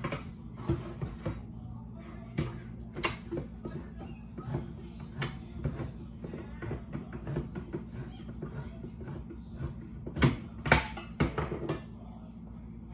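Hand-held manual can opener worked around a small can of green chilies: a run of uneven clicks and knocks, loudest near the end, over a steady low hum.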